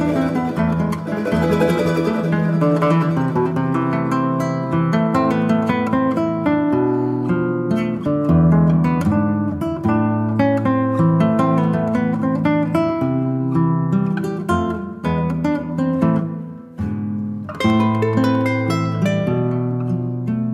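Instrumental Andean folk music on plucked and strummed strings, charango and guitar. The notes are picked and strummed. The level dips briefly about sixteen seconds in, then the playing picks up again.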